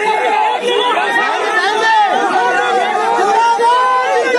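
A crowd of men talking loudly over one another, many voices at once with no break.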